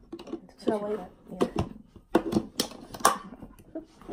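Tin cans being handled and opened: a series of sharp metallic clicks and clinks, mixed with voices and laughter.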